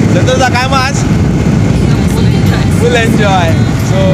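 Wind buffeting the microphone and road noise from a moving motorcycle, a dense low rumble throughout, with two short bursts of voice, one near the start and one past the middle.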